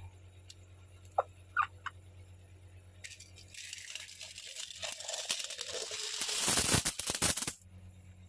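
A cupful of metal coins being poured out onto a cloth: a few single clinks, then a jingling clatter of coins striking each other that builds for about four seconds and stops suddenly near the end.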